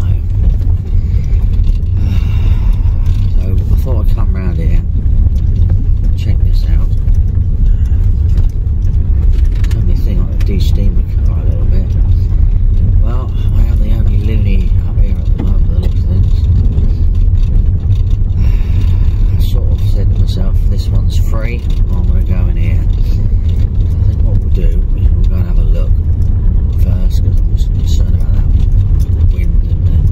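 Steady low rumble of a car driving along a rutted dirt track, heard from inside the cabin.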